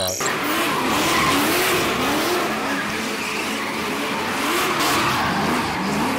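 BMW E36 drift car doing donuts: tyres screeching steadily while the engine revs rise and fall.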